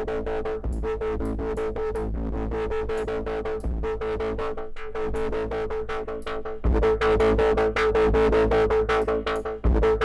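A drum loop played back in the Groove Agent 5 drum plugin, shaped by its filter and filter envelope and run through one of the saturation filter types, which do 'nasty things' to the sound: a fast run of distorted hits over a steady ringing tone. It jumps louder and heavier in the low end about two-thirds of the way in, and there is a short laugh near the end.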